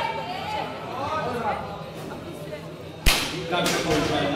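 A 170 kg loaded barbell is set back into the bench press rack: a sudden loud clang of the bar on the uprights about three seconds in, with a second, smaller knock just after. Voices come before it.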